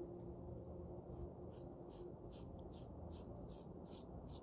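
1951 Gillette Tech safety razor with a Platinum Strangelet blade scraping through lathered beard stubble on the cheek, in quick short strokes about four a second, starting about a second in.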